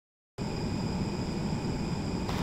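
Dead silence for about a third of a second, then steady background ambience from a recording starts: an even hiss-like noise with faint thin high tones. It is the ambience copied by SpectraLayers' ambience match, playing back before the clip's speech begins.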